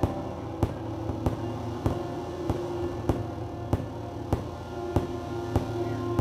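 Live drone music from keyboard and guitar: long held tones over a low drone, with a steady pulse of sharp clicks about every 0.6 seconds.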